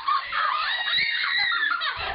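Young girls shrieking with laughter: high-pitched, drawn-out squeals that rise and fall for most of the two seconds.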